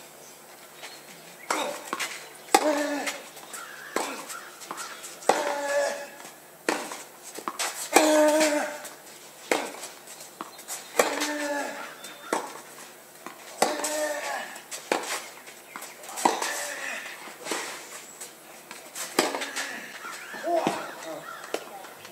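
A tennis rally: racket strikes on the ball about every one and a half seconds, back and forth, with a player's short grunt on every other shot.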